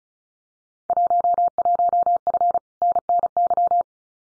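Computer-generated Morse code at 35 words per minute: a single steady pitched tone keyed rapidly into dots and dashes for about three seconds, repeating the Field Day contest exchange "11F, Northern New York" that was just spoken.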